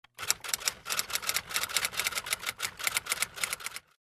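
Typewriter sound effect: a rapid, uneven run of key clicks that stops shortly before the end.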